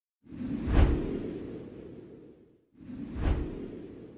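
Two whoosh sound effects for an intro logo animation. Each swells to a peak with a low boom and then fades, the second coming about two and a half seconds after the first.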